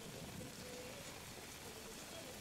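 Heavy rain falling on water, a steady faint hiss with no distinct events.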